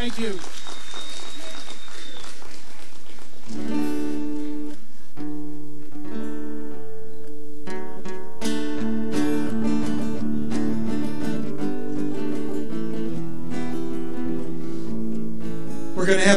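Crowd applause for the first few seconds, then an acoustic string band of guitars and banjo strumming and picking chords.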